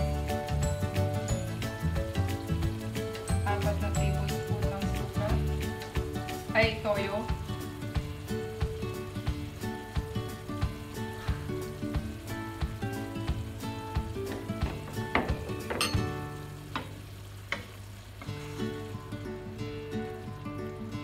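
Adobong sitaw (string beans in soy-vinegar sauce) sizzling and simmering in a nonstick wok, with light clinks of a metal spoon as soy sauce is spooned in, and a wooden spatula stirring near the end. Light background music plays throughout.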